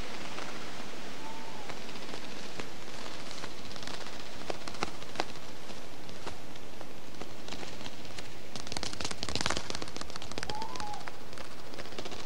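A steady hiss with scattered crackles and clicks that grow denser about two-thirds of the way through, and a short faint chirp about a second in and again near the end.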